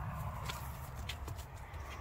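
Handling noise on a handheld camera's microphone: a steady low rumble with a few faint light taps.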